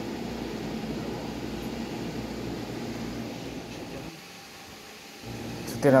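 Steady mechanical hum of a fan. It drops away for about a second near the end.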